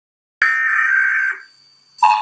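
Electronic alert tone of a mock emergency broadcast. It is a high, steady, harsh burst that starts abruptly just under half a second in, holds for about a second, and then fades away.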